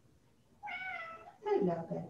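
Domestic cat giving a single drawn-out meow, starting about half a second in and lasting just under a second, falling slightly in pitch.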